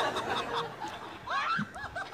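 A person laughing: a quick run of short laughs in the second half.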